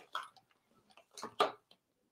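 Palette knife lightly tapping and scraping on the paint palette while picking up paint: a few short, faint ticks.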